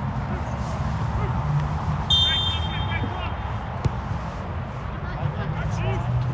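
A referee's whistle blows once about two seconds in, a steady shrill note lasting just over a second. Under it runs a steady low rumble, with faint distant shouts from players.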